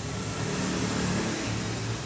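A steady low background rumble, swelling slightly about halfway through.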